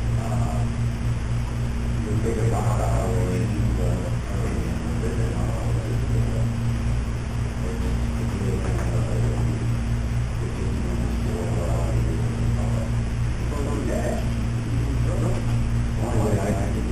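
Steady low hum with muffled, indistinct talk from people around a meeting table, the voices coming and going at intervals.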